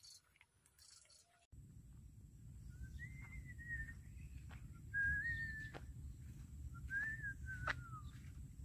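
Several short whistled notes, each under a second and fairly level in pitch, over a steady low rumble, with a few sharp clicks; the first second and a half is nearly quiet.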